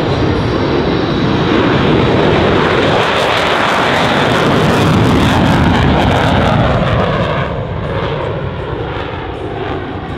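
Lockheed Martin F-35B's single Pratt & Whitney F135 engine in full afterburner as the jet lifts off and climbs away: a loud, rough jet noise with a crackle, at its loudest in the middle, then duller and quieter from about seven seconds in as the aircraft pulls away.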